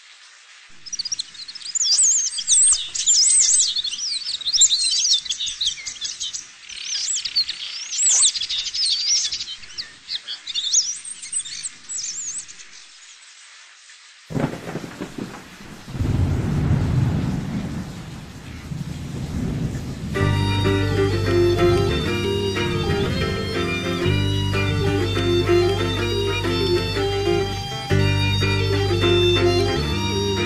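Birds chirping and singing in the intro of a folk metal track. A low rumbling swell comes in at about 14 seconds. From about 20 seconds the band's music takes over, with a steady low bass line and sustained melodic notes above it.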